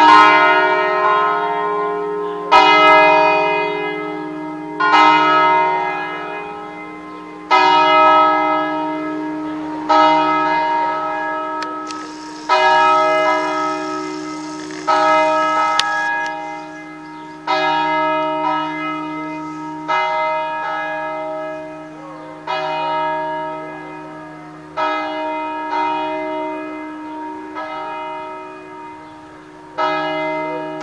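Three electrified half-swing church bells cast by Rüetschi in 1976, tuned E♭, F and G, ringing a full peal that calls to Mass. The strikes land about every two and a half seconds, each ringing on and fading before the next.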